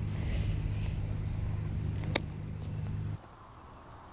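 A single sharp snip about halfway through as hand pruners cut across the top of a young pawpaw rootstock stem. A steady low hum runs underneath and cuts off near the end.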